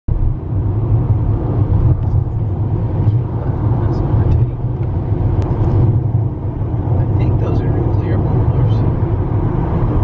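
Steady low road and engine rumble of a car cruising at highway speed, heard from inside the cabin, with faint talk in the second half.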